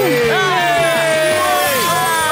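Wordless whooping and exclaiming voices, their pitch sliding up and down, over background music, with a brief sweeping whoosh near the end.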